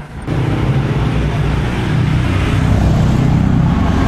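Electric pump of a roadside petrol dispenser running steadily while fuel is pumped through a hand nozzle into a scooter's tank. It starts abruptly about a quarter second in.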